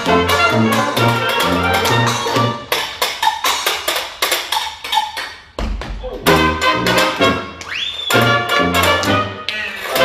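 Dixieland jazz band of trumpet, trombone, clarinet, banjo, tuba and washboard playing. About three seconds in the band drops out to a break of washboard clicks and scrapes, then the full band comes back in with a thump around the middle, with a rising instrumental glide near the end.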